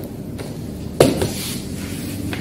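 A single sharp knock about a second in, from bottles and packed supplies being handled in a cardboard box, over a low steady background.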